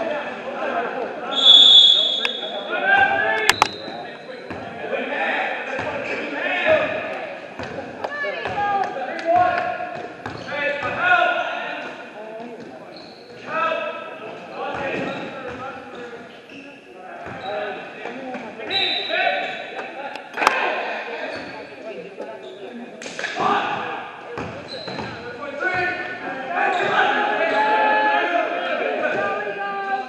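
Basketball bouncing on a gym floor during play, with sharp impacts scattered through, and voices of players and spectators echoing in a large hall. A brief high squeak comes near the start.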